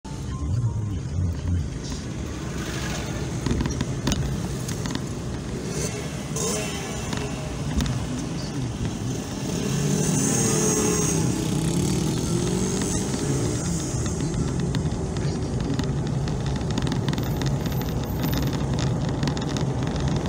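Engine and road noise heard from inside a moving car, getting louder about halfway through, where the engine's pitch sweeps up and down.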